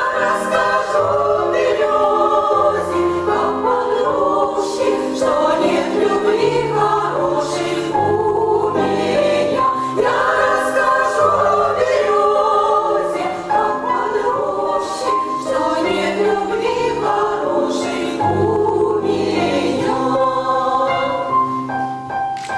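Women's vocal ensemble singing in several parts over piano accompaniment, whose low bass notes are held beneath the voices.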